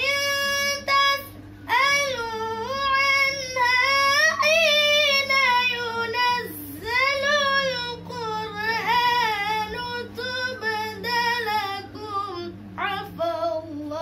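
A young female voice reciting the Qur'an in melodic tilawah style: long held notes with ornamented, wavering pitch, broken by a few short breaths. A steady low hum runs underneath.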